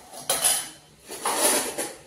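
Metal kitchen utensils clattering and clinking as they are handled in a drawer rack under the counter, in two bursts, the second longer.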